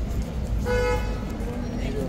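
A vehicle horn gives one short, steady toot a little over half a second in, over a constant low rumble of street traffic.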